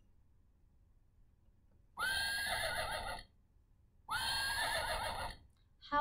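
A recorded horse whinny played twice through the speaker of a wooden farm-animal sound puzzle. Each whinny lasts just over a second, and the second is an identical repeat of the first.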